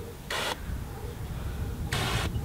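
Garden hose spray nozzle letting out two short bursts of water spray, the first about a third of a second in and the second near the end.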